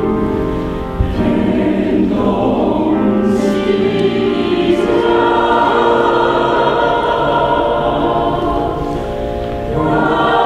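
Mixed choir singing a Taiwanese-language art song in sustained chords, its sound dipping briefly about a second in and again just before the end.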